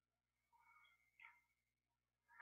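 Near silence: room tone on a video call, with a few very faint, short high-pitched sounds about halfway through.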